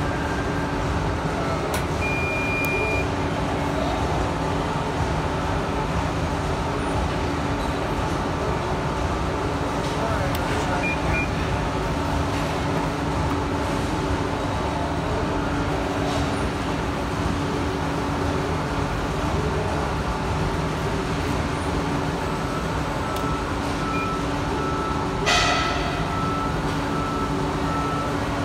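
Amada HG1003 ATC press brake running with a steady hydraulic hum as the ram presses a steel part into the die, with a brief sharp clunk near the end. The bend stops short because the press has run out of tonnage.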